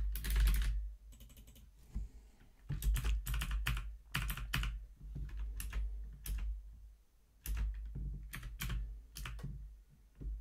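Typing on a computer keyboard: quick runs of keystrokes with short pauses about a second in and again about seven seconds in.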